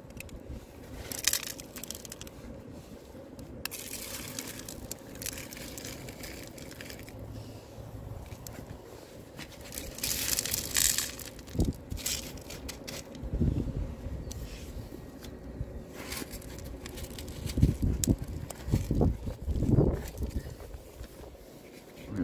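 Loose gravel ballast crunching and rattling as it pours out of the opened bottom doors of a G-scale model hopper car onto the track. It comes in uneven bursts, heaviest about halfway through, with several low bumps in the second half.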